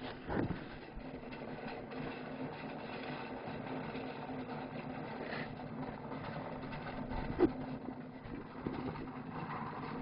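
A steady low hum, with a few faint clicks and knocks.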